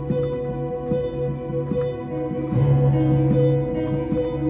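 Electronic keyboard playing slow worship chords: piano notes struck over a sustained synth pad with a held bass note, the chord changing about two and a half seconds in.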